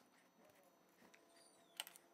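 Near silence while resin is poured slowly into a cup on a balance scale, with a few faint small clicks and one sharper click near the end.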